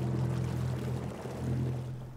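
A motorboat's engine droning steadily over the rush of water churned up in its wake, fading out near the end.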